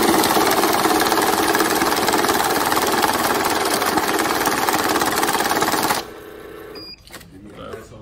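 Cassida banknote counting machine running a stack of $100 bills through at about twenty notes a second: a loud, steady, rapid riffling that cuts off suddenly about six seconds in. A short beep follows a moment later.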